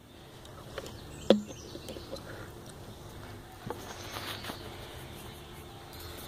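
Faint rustling as a phone is moved about, with a few light knocks, the sharpest just over a second in, over a low steady hum.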